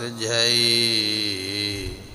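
A man chanting Gurbani, holding one long sung note that bends slightly at the end of a line, over a steady low hum that stops near the end.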